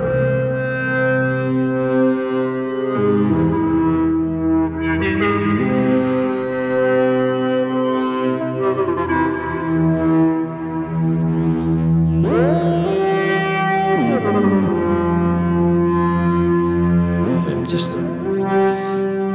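Generative Eurorack modular synthesizer patch playing two voices together: a melody voice and a counterpart voice made by a pulse oscillator exciting a Mutable Instruments Elements resonator. Held notes change every second or two with vibrato, and there are gliding pitch sweeps about two-thirds of the way in and near the end.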